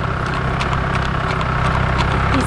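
A motor vehicle's engine running steadily with a low rumble, with a horse's hooves clip-clopping on the road over it.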